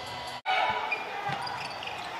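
Live game sound of a basketball being dribbled on a hardwood court in a near-empty gym, cutting in after a brief dropout about half a second in.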